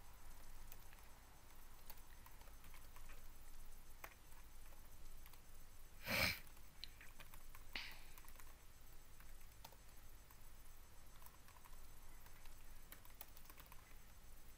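Typing on a computer keyboard: faint key clicks at an irregular pace, with one brief louder noise about six seconds in.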